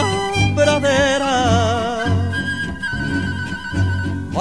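Mariachi-style instrumental passage between sung verses: violins play a phrase with vibrato, then a single high note is held from about halfway through, over regular plucked bass notes.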